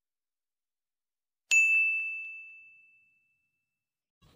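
A single bright ding, a bell-notification sound effect: one sharp strike about a second and a half in, ringing on one high note and fading out over about a second and a half.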